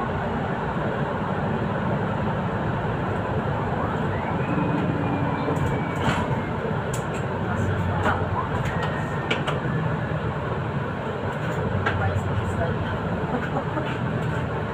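Interior sound of a Solaris Urbino 8.9 city bus under way: a steady engine drone and road noise, with the engine note swelling and easing as the bus drives on, and a few light clicks and rattles.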